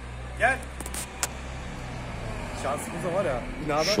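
Low rumble of a car engine on the street that fades out partway through, with brief voices and a couple of sharp clicks over it.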